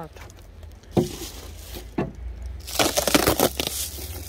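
Plastic bubble-wrap sheet crinkling for about a second near the end as it is pulled off the top of a beehive, after two sharp knocks about one and two seconds in.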